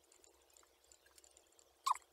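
Quiet room tone, then near the end a brief falling vocal sound from a woman, a short exclamation or the start of a laugh.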